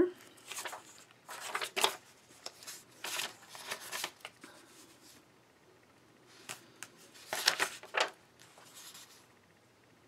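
Loose printed paper pages rustling and sliding over one another as they are leafed through, in several short bursts with a quieter pause in the middle.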